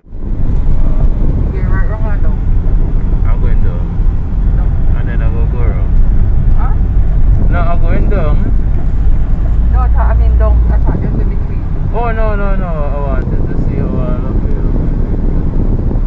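A car driving slowly, with a loud, steady low rumble of wind and road noise on the phone's microphone inside the cabin. Indistinct voices come through faintly several times.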